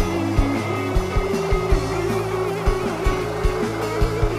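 Live rock band playing: electric guitar and drums over sustained bass notes, with kick drum hits several times a second.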